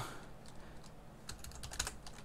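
Computer keyboard keys being typed, a quick run of faint clicks in the second half.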